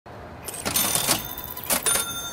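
Short clattering strokes with a bell-like ring over them, a cash-register ka-ching used as an advert sound effect, sounding three times.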